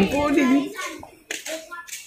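A person's voice speaking briefly, then a few sharp clicks in the second half.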